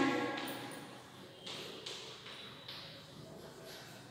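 Chalk writing on a blackboard: several short scratchy strokes at irregular intervals as a word is written out.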